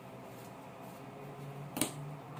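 A single sharp click near the end, over quiet room tone with a faint low hum.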